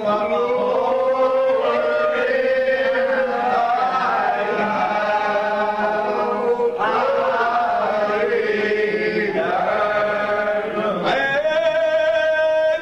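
Men's voices singing a lined-out hymn unaccompanied, slow and drawn out, holding long notes and sliding between pitches, with short breaks between phrases about seven and eleven seconds in.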